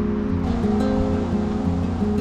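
Background music: a strummed acoustic guitar playing chords.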